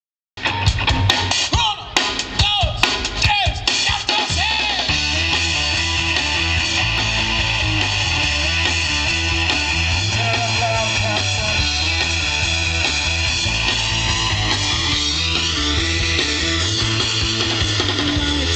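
Rock band playing live on an outdoor stage with electric guitars and a drum kit: an instrumental intro. The first few seconds are separate guitar and drum hits with sliding guitar notes, then the full band with bass comes in steadily about four and a half seconds in.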